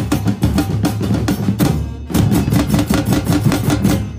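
Football-terrace percussion group playing together: large bass drums and other drums beating out a fast, dense rhythm, with a short break about halfway through before the full group comes back in.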